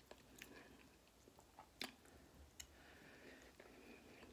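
Near silence with a few faint, sharp mouth clicks of someone chewing sour lemon, the clearest a little before the halfway point.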